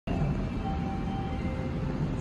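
Railway station platform ambience: a steady low rumble with a few faint, thin steady tones above it.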